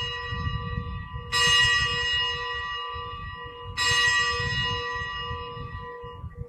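Consecration bell rung at the elevation of the host: separate strikes about two and a half seconds apart, each ringing out and slowly fading, two of them falling about a second in and near the four-second mark.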